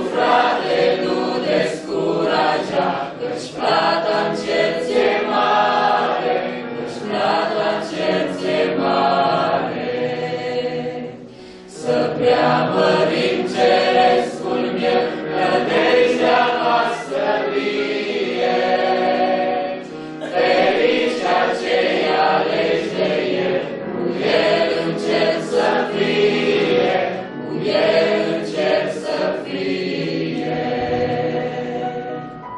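A small worship group of mixed men's and women's voices singing a hymn together into microphones, with a brief break between phrases about a third of the way through.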